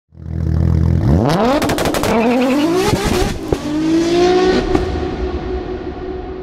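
Car engine idling for about a second, then revved hard, its pitch climbing in several rising sweeps with sharp crackles, before settling into a steady held tone that slowly fades.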